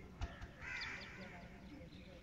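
Two dull knocks close together, then a short, harsh, rasping call about half a second long, over faint voices.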